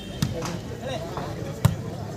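A volleyball struck by players' hands during a rally: two sharp hits about a second and a half apart, the second louder, over crowd chatter.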